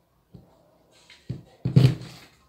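Knife, heated over a candle, pushed down into a clear plastic storage-box lid, with a faint click about a third of a second in, then two heavier knocks on the hollow plastic box near the end.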